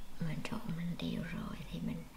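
A person's voice speaking softly in short murmured phrases, with no clear words.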